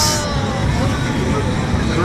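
Steady arcade din: an even wash of game-machine noise and distant chatter, with a short hiss at the very start.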